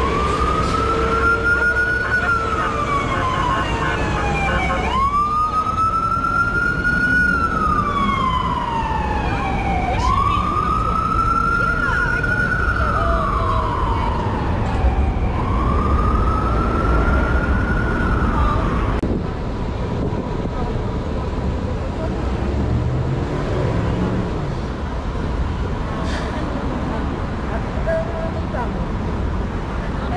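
Emergency vehicle siren wailing in four slow cycles, each rising quickly and then falling slowly, stopping about two-thirds of the way through. Steady city street traffic rumbles underneath.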